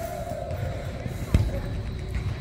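A soccer ball kicked once on an indoor turf field, a single sharp thud about a second and a half in, over a low steady rumble. A faint falling tone fades out just before the kick.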